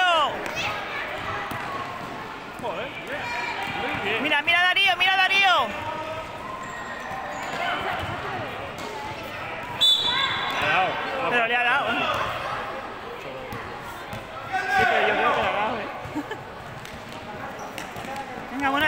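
A basketball bouncing on a hard indoor court during play, with shouting voices heard three times, at about 4, 10 and 15 seconds in.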